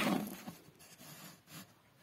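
Scratchy rubbing and rustling of hands on fabric and thread close to the microphone, loudest at the start, then a few fainter short scrapes.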